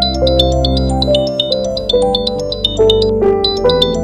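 Smartphone ringtone for an incoming call: a quick, repeating run of short high electronic notes, played over soft sustained background music.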